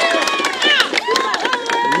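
Speech: a man's voice talking in Swahili, with other voices from a crowd of men around him.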